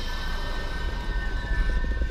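Horror-film soundtrack: a low rumble with a few thin, steady high tones held over it, fading near the end.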